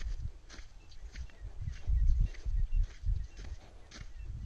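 Footsteps on dry, dusty ground at a steady walking pace, a little under two steps a second, with wind rumbling on the microphone.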